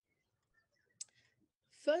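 A quiet pause with one short, sharp click about a second in, then a woman's voice starting near the end.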